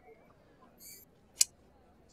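Near quiet with a brief faint hiss a little under a second in, then a single sharp click about a second and a half in.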